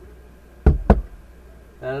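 Two sharp knocks about a fifth of a second apart, each with a heavy low thud.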